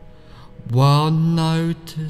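Music with a chanted vocal note held at a steady pitch for about a second, starting a little past halfway.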